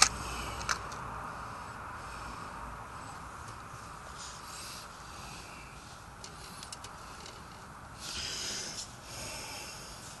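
A person breathing close to the microphone, with a few noisy breaths near the end, over a faint steady hiss; a sharp click sounds right at the start.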